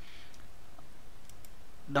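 A few faint computer mouse clicks over steady low background noise.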